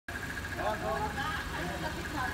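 Pickup truck idling with its driver's door open, a steady low engine rumble under a rapid, even high-pitched chime of the kind a vehicle sounds when a door is left open.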